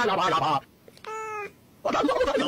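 A voice-like sound stops about half a second in, then a single short cat meow, a steady pitched call of about half a second, comes about a second in.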